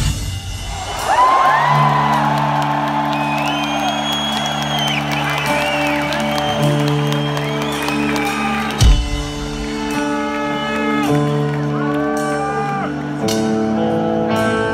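Sustained synthesizer chords, with a slow high keyboard melody above them, during a quiet interlude in a live rock concert. Over the first few seconds a crowd whoops and cheers. A single low thump comes about nine seconds in, and the chord grows fuller shortly before the end.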